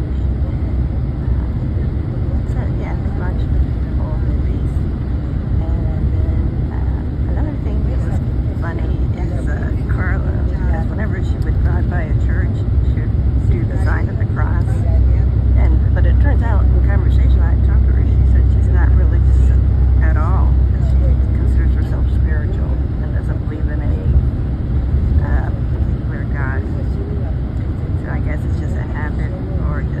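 Steady low rumble of road and engine noise heard from inside a moving vehicle at highway speed, growing somewhat louder around the middle.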